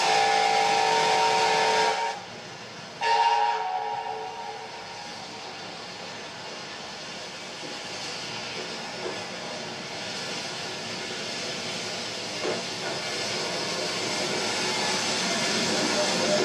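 Steam locomotive whistle blowing a chord in two blasts, the first about two seconds long and the second shorter, followed by a steady hiss of steam that slowly grows louder.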